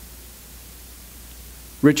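Steady background hiss during a pause in speech, then a man's voice starts loudly near the end.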